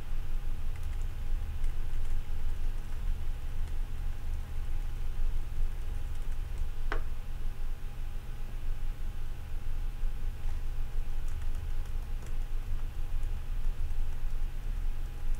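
Computer keyboard keys tapped now and then, faint clicks over a steady low hum, as a video is stepped through frame by frame. One brief, sharper chirp-like sound about seven seconds in.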